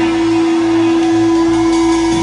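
An electric guitar rig holds one long sustained note through the amplifier: a single steady ringing tone over a low bass note, with no drumming.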